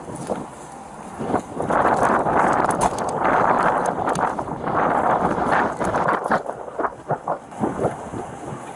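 Handling noise on a body-worn camera: an arm and sleeve rub against the microphone, making a loud scuffing rustle for about five seconds. Near the end come a few sharp clicks and knocks.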